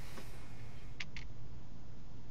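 Steady low room hum with two faint, short clicks about a second in, a quarter second apart.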